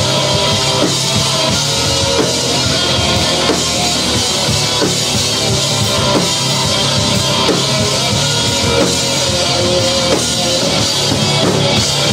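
A heavy rock band playing an instrumental passage live, with electric guitars, bass and a drum kit going steadily and loudly, and no vocals.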